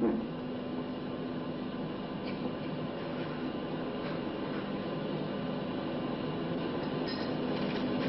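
Steady hiss with a low hum from a television's soundtrack playing old archival film, just as its music ends.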